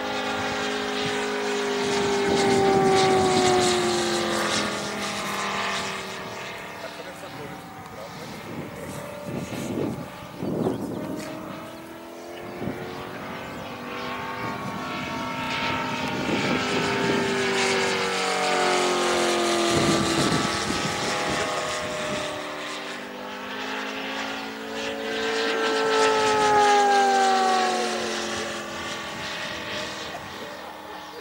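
The 250cc Moki five-cylinder radial engine of a large-scale RC P-47 Razorback, turning a four-bladed propeller, running in flight. Its note swells and drops in pitch as the plane makes fly-by passes, loudest about three seconds in, near twenty seconds and near twenty-six seconds.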